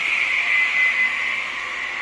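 Cut-off saw's motor and blade running free between cuts: a steady high whine with hiss.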